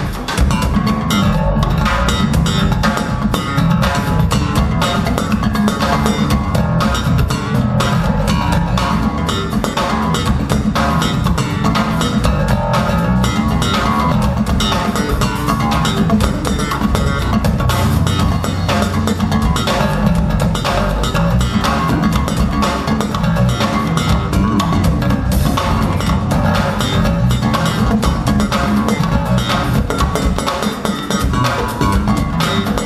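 Live band music led by an electric bass guitar, played as a featured bass part over a drum kit.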